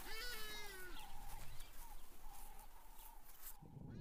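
A single animal call in the first second, its pitch falling at the end, followed by faint steady natural background.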